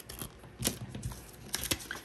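Small sharp clicks and light paper rustling from a plastic marker pen being handled, capped and set down on a paper planner: one click a little over half a second in and a quick run of clicks about a second and a half in.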